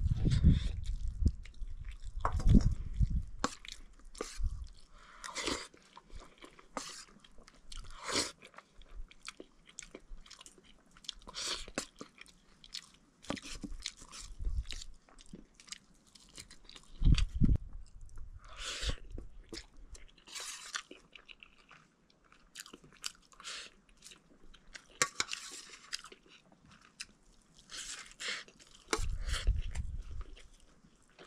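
Close-up eating sounds: a steel spoon clinking and scraping against a steel plate of rice and egg fry, and mouth chewing, in a run of short, sharp clicks. A few low thumps come near the start, in the middle and near the end.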